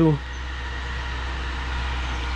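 A steady low rumble with a faint even hiss above it, unchanging throughout; a man's voice breaks off just at the start.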